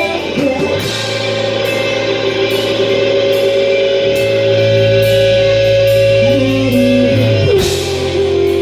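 Live rock band playing: distorted electric guitars, bass guitar and drum kit, with a female singer. A long note is held from about a second in until near the end.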